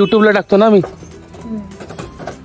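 A person's voice making drawn-out, rising-and-falling vocal sounds without words, loud in the first second and stopping before halfway, followed by quieter background.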